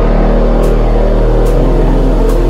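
Heavy electronic bass music: a loud sustained sub-bass and thick synth bass chords, with a light percussive hit about every three-quarters of a second.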